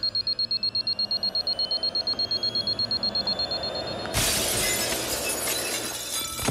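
Rapid, high-pitched electronic beeping, a bomb's countdown alarm, with faint tones rising slowly beneath it. About four seconds in, the beeping gives way to a loud crash of window glass shattering as a man bursts through it, followed by tinkling fragments.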